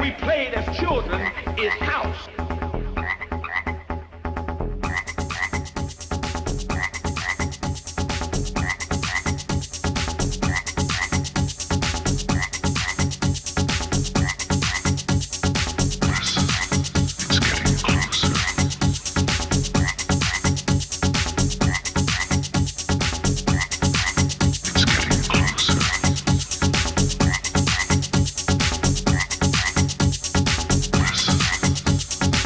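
Background electronic dance music with a fast, steady beat and a short high figure repeating about once a second; a new track starts about five seconds in, fuller and brighter than the tail before it.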